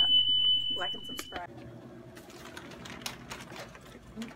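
A steady, high-pitched electronic beep holds for about a second and a half, then cuts off suddenly. A faint low hum and light clicks follow.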